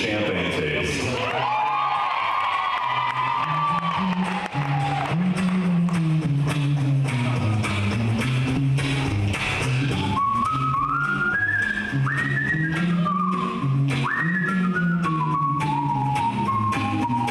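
All-vocal a cappella group performing live: a low bass voice and close vocal harmony, with a clear whistled melody over them about a second and a half in and again from about ten seconds.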